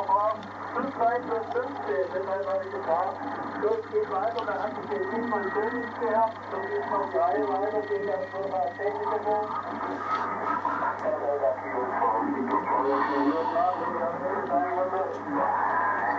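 A man's voice talking over an amateur-radio receiver's loudspeaker, sounding thin and narrow as radio voice does, over a steady low hum.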